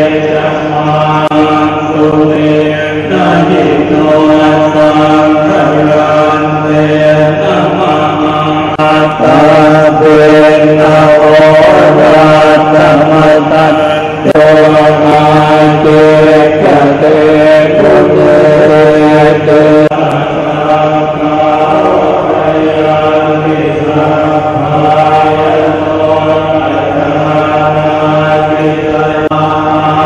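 Thai Buddhist monks chanting together in unison: a loud, droning recitation held on a few steady pitches.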